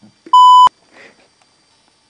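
A single steady censorship bleep, a pure beep about a third of a second long, dubbed in to hide a swear word.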